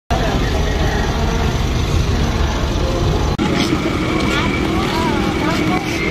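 Low steady rumble of an idling vehicle engine outdoors. About halfway through it breaks off abruptly and gives way to several people talking at once.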